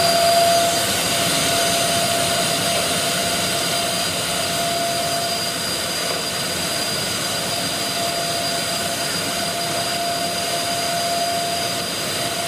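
Vacuum cleaner running steadily with a constant whine, its hose and brush attachment drawn over painted cabinet panelling to pick up sanding dust between coats.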